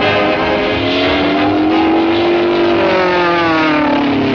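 Cartoon soundtrack: one sustained pitched sound that slowly rises in pitch and then falls away near the end, over the orchestral score.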